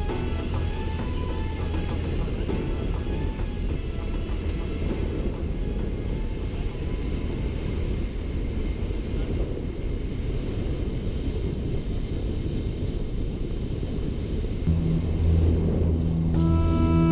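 Steady low rumble of a vehicle driving across desert sand. Background music fades out in the first few seconds and comes back in strongly near the end.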